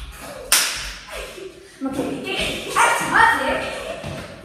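A single sharp smack about half a second in, then a girl's loud voice calling out in drawn-out, pitched sounds.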